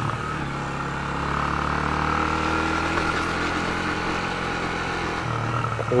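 Yamaha YB125SP motorcycle's 125 cc single-cylinder engine running steadily while riding along, heard from the rider's seat with wind noise.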